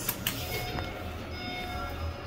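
A 1998 Dover traction elevator car travelling in its shaft: a steady low rumble that grows a little stronger about a second in.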